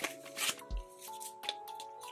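Paper dollar bills rustling and flicking in the hands as they are counted and handled, a few short crisp rustles over soft background music with long held notes.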